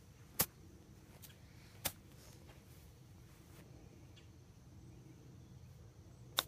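Quiet outdoor background with a few short sharp clicks in the first two seconds, the loudest about half a second in and another just before the two-second mark.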